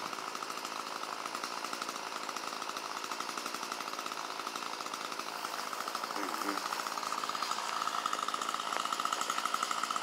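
A small engine, chainsaw-like, running steadily with a fast buzzing pulse, getting somewhat louder in the last few seconds.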